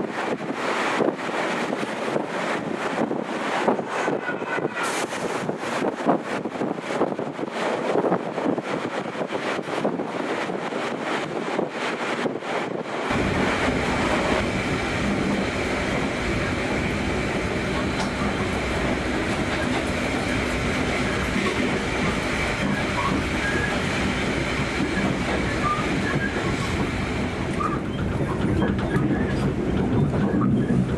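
A passenger train running along the line. For the first thirteen seconds it is heard at an open window: rushing wind with a quick, irregular clatter of wheels on the rails. Then it switches abruptly to the steadier, deeper rumble of the moving carriage heard from inside through a closed window.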